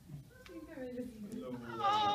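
Indistinct talking in a small room. Near the end a young child's loud, high, drawn-out voice starts and holds.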